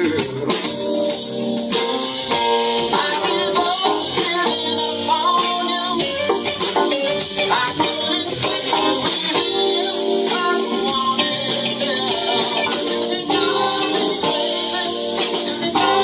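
Live band playing a song on keyboard, electric guitar and drum kit with cymbals.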